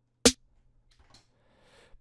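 Layered electronic trap snare, two snare samples sounding together: a single sharp hit about a quarter second in, with a bright top end.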